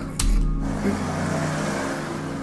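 A sudden low thump about a fifth of a second in, then a steady rushing noise, with music underneath.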